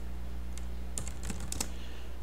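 Computer keyboard typing: a short run of separate keystrokes, most of them in the second half, over a steady low electrical hum.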